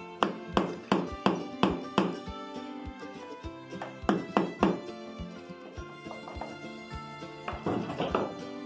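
Hammer blows on the end of a screwdriver set against a screw in a wooden boat's planking: a quick run of about six sharp knocks, three more about four seconds in, and another pair near the end. The screwdriver is being driven into the old fastenings to work them loose for removal. Background music plays underneath.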